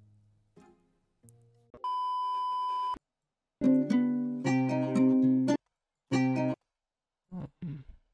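A steady beep lasting about a second, then the rendered dark guitar-melody sample playing back, stopped and started again in short bursts.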